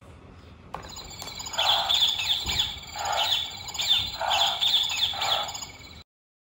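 A children's sound book's small electronic speaker plays its recorded kangaroo sound after a button click: four short chirping calls, repeated about once a second.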